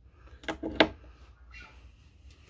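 Two short knocks from handling an electric bass, about half a second and three quarters of a second in, the second sharper and louder, over a faint low hum.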